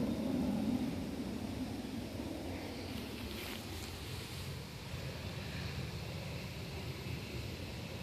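Quiet, steady outdoor background rumble with no distinct event; the turkey makes no call.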